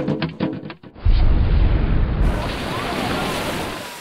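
Quick run of thumps as a boy runs along a diving board, then about a second in a huge, deep cannonball splash into a pool, followed by a long rush of falling spray that slowly fades.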